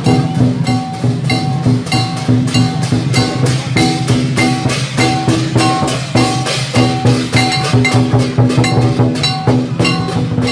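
A dragon dance percussion troupe plays a fast, steady rhythm: a large barrel drum pounds, with clashing hand cymbals and ringing gong strokes.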